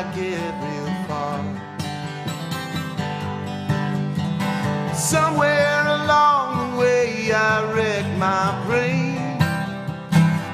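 Live acoustic country-folk song: a man singing lead over a strummed acoustic guitar.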